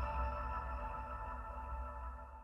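Closing jingle of a news channel's logo ident: a sustained chord dying slowly away.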